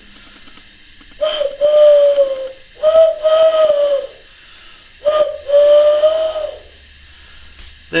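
Owl hoot made by blowing across the gap between two cupped hands, sounded three times: each hoot is a brief note and then a longer, steady one that sags slightly in pitch at the end.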